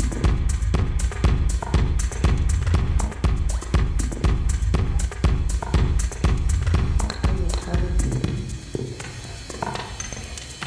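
Runway soundtrack music with a steady beat and heavy bass, thinning out about eight seconds in.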